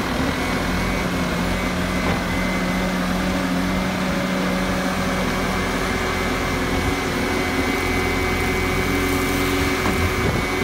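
Bobcat S650 skid-steer loader's diesel engine running steadily while the lift arms raise a bucket of dirt.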